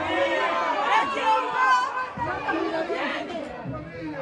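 Several people's voices talking and calling out over one another, untranscribed, most likely spectators or players at a football match.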